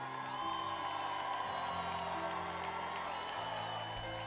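Soft background music of sustained chords, the bass note shifting about three times.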